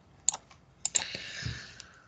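Clicking at a computer: one sharp click about a quarter second in, then two quick clicks close together near the one-second mark, followed by a short hiss and a soft thump.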